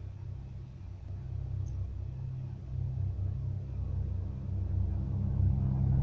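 Train's low rumble, growing steadily louder.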